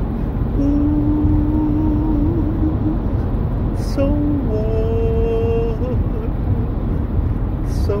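A man singing wordless, unaccompanied held notes: a long lower note in the first few seconds, then a higher one about four seconds in. Under the singing is the steady low rumble of road noise inside a moving car.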